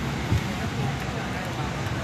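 Airliner cabin ambience during boarding: the steady rush of the cabin ventilation with a low hum, faint voices of other passengers, and one brief thump about a third of a second in.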